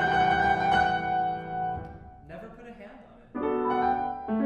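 Grand piano played solo in a recital hall: sustained chords ring and die away about two seconds in, leaving a brief quiet gap, before a new chord is struck near the end.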